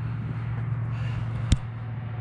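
A steady low mechanical hum with a single sharp click about a second and a half in.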